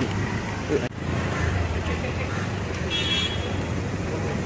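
A car's engine running at low speed close by, a steady low hum over street traffic noise, with faint voices around it. A short high-pitched sound comes about three seconds in.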